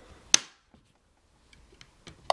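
A single sharp plastic snap about a third of a second in, as a flat pry tool works the plastic screen bezel of an HP Pavilion 15z-n100 laptop loose from its clips. A few faint ticks follow near the end.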